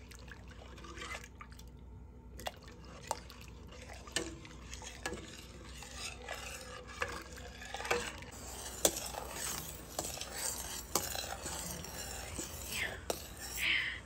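Metal spoon stirring coconut milk in a stainless steel pot, the liquid swishing, with irregular clicks and scrapes as the spoon knocks against the pot's sides and bottom, coming more often in the second half.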